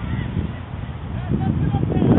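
Distant shouts of football players calling to each other on the pitch, a few short calls over a steady low rumble of wind on the microphone.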